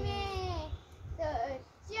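A young girl's voice: a drawn-out, sing-song word falling in pitch, then a short word, then a brief pause. A low rumble runs underneath.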